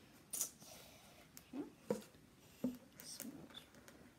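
Hands handling and opening food packaging: a few short clicks and rustles, with quiet stretches between them.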